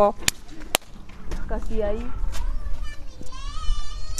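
Faint background voices, including high-pitched children's voices, with two sharp clicks in the first second over a low rumble.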